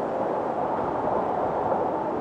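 Steady rush of wind noise on the microphone during a skydive.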